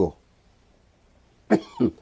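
An elderly man coughing briefly, about one and a half seconds in, after a quiet pause in his speech.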